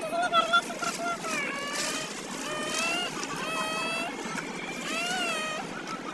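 A young child's high voice making drawn-out, sliding sing-song sounds without clear words, over a steady background hum.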